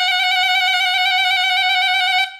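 A saxophone holding a single high note with a slight vibrato, the sustained closing note of the piece.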